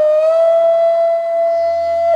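Bansuri (bamboo transverse flute) playing a raag, sustaining one long note that slides slightly up and then holds steady, over a low steady drone.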